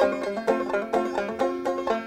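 Banjo music: a quick run of plucked notes in a bluegrass style.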